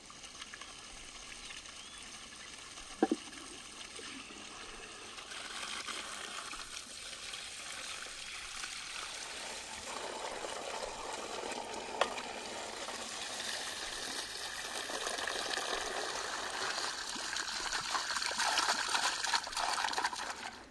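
Water running from an outdoor pipe and splashing onto stones as raw beef hearts are rinsed by hand under it, growing louder toward the end. A sharp knock about three seconds in.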